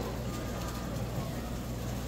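Steady low hum under a faint, even background wash of a busy market stall, with no distinct sound standing out.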